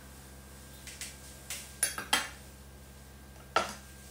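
Metal cake server and knife clinking against ceramic tableware as they are set down. There are a few light clinks around the middle and one sharp clink near the end.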